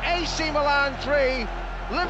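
A person talking, the words not made out, over a steady low hum.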